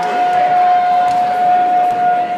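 A horn sounding one long, steady, loud note over gym crowd noise.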